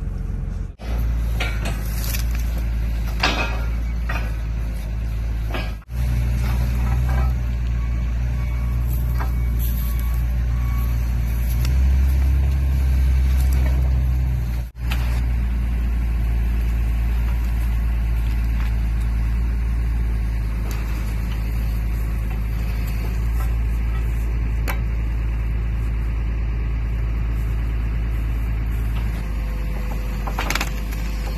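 Engine of a loader fitted with pallet forks running steadily while it works, pushing against a tree stump. The sound cuts off abruptly three times, about one, six and fifteen seconds in, and runs loudest just before the last break.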